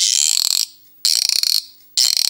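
Cup roarer: a small canister whirled on a rosined string looped over a grooved wooden dowel, giving three loud creaking squawks about a second apart as the string grips and slips in the groove and the canister amplifies it.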